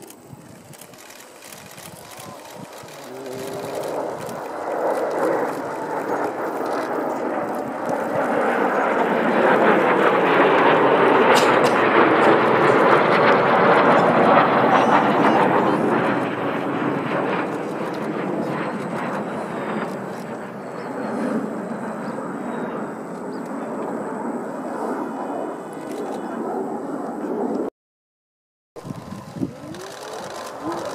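Jet noise from a formation of Kawasaki T-4 twin-turbofan jets flying over. It builds up over several seconds, is loudest about ten to fifteen seconds in, then eases to a steadier rush, with a brief break in the sound shortly before the end.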